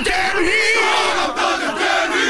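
A large crowd shouting and cheering, many voices at once, loud and steady.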